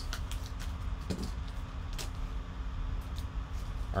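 Scissors snipping open a foil card pack, with the foil crinkling in short, scattered crackles and clicks over a steady low hum.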